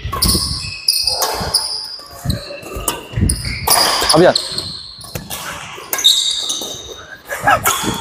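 Badminton rally: rackets strike the shuttlecock again and again as sharp echoing smacks, and sneakers squeak briefly on the wooden court floor between shots.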